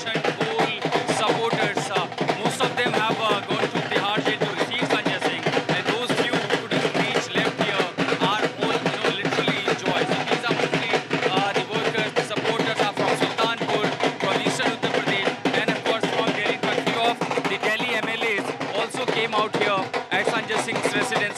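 Dhol drums beaten in a fast, continuous rhythm amid a loud, noisy crowd.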